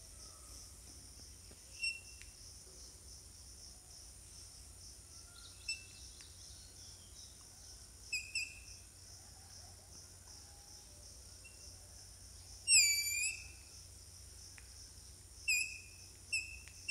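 Background of insects droning steadily at a high pitch, with a bird giving short, high chirps now and then and one louder, longer call a little after the middle.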